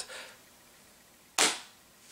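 A single sudden sharp noise about one and a half seconds in, fading within half a second, amid an otherwise quiet pause.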